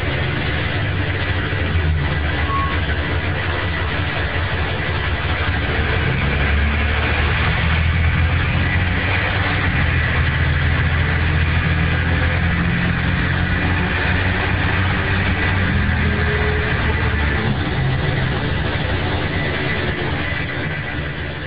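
Mercedes-Benz OHL1316 bus's OM 366 inline-six diesel engine running under load, heard from inside the cabin through a phone recording. The engine note climbs about six seconds in and falls back near the end, as the Allison automatic works through its gears.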